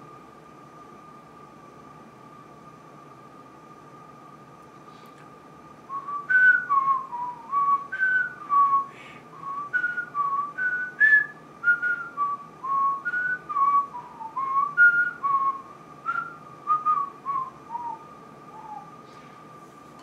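A person whistling a tune of short gliding notes, about two a second, starting about six seconds in and stopping about a second before the end, over a faint steady high-pitched tone.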